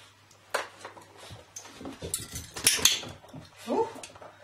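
A puppy moving about and stepping into a plastic tray: a soft click early, then a quick cluster of sharp clicks and knocks a little after two seconds in.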